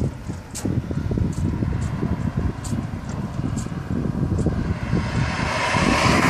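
Wind buffeting the microphone in low, irregular gusts, with a rushing sound swelling near the end.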